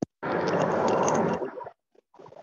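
A click from a microphone, then a loud rush of microphone noise lasting just over a second that stops abruptly.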